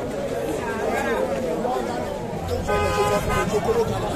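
Many people talking at once in a street crowd, with a vehicle horn sounding one steady note for under a second about three seconds in.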